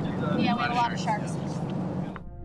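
A small boat's motor running with wind and water noise, while people aboard call out unclearly for about a second near the start.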